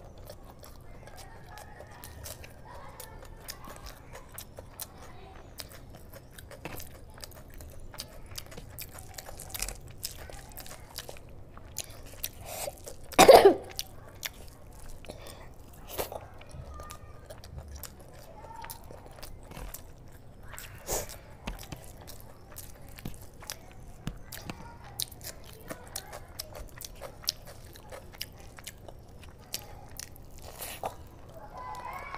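Close-miked chewing of mutton curry and rice, with many small wet mouth clicks and smacks. One brief, much louder sound comes about halfway through.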